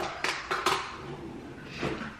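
A spoon stirring oats, milk and protein powder in a dish, with a few sharp clinks against its side.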